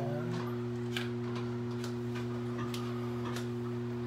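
Royale flat iron being clamped and drawn through hair, giving light, irregular clicks of its plates and handle, over a steady low hum.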